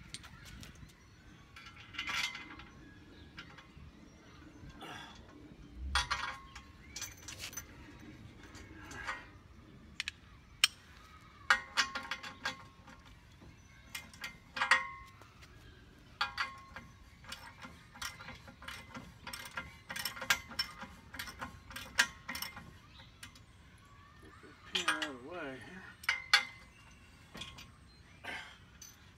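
Socket ratchet cranking a nylon lock nut onto a steel bolt: scattered runs of ratchet clicks and metal clinks, with pauses between strokes. The nut's nylon insert resists from the first turn, so it has to be cranked.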